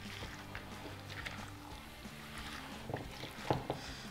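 Soft wet stirring of a creamy salad with a silicone spatula in a glass bowl, with a few light knocks of the spatula near the end, under faint background music.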